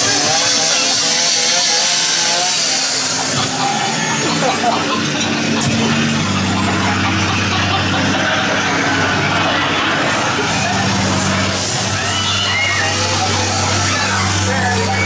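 A chainsaw running loudly amid yelling voices. A steady low drone joins in from about six seconds in.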